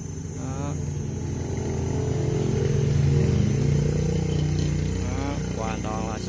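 A motor vehicle's engine hum swells to a peak about three seconds in and then fades, as a vehicle passes by.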